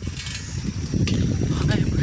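Low rumbling noise of wind and handling on a handheld phone microphone outdoors, with a faint voice in the background.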